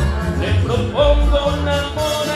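Karaoke singing: a man's voice through a handheld microphone over an amplified backing track with a steady bass and beat.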